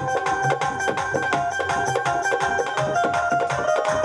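Live Indian devotional folk music with no singing: a hand-played dholak barrel drum beats a fast, steady rhythm under a melody of held notes that step from pitch to pitch.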